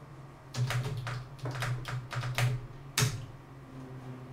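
Typing on a computer keyboard while logging in: a quick run of key clicks, then a single louder keystroke about three seconds in.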